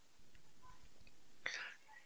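Faint room tone, with one short breath from the narrator about one and a half seconds in.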